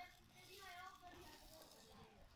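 Faint voices talking in the background over near quiet.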